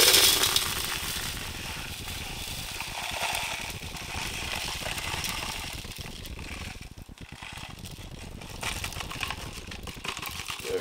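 Dry paydirt gravel poured from a foil bag onto a classifier's wire mesh screen: a steady hiss and rattle of falling grit and pebbles, loudest as the pour begins, with crinkling of the foil bag as it is shaken out near the end.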